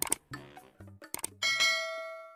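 A few short clicks, then a bell ding about one and a half seconds in that rings and slowly fades: a subscribe-and-notification-bell sound effect.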